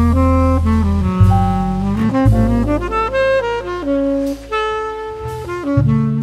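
Smooth jazz instrumental: a saxophone plays the melody in a run of held and stepping notes over a sustained bass line.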